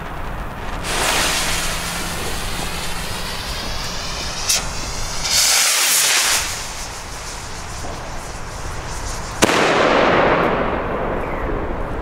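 A Pyroland Populum ball-head bomb rocket going up with a long rushing whoosh that sweeps in pitch as it climbs. About nine and a half seconds in there is a sharp bang as its head bursts, followed by a couple of seconds of loud rushing noise.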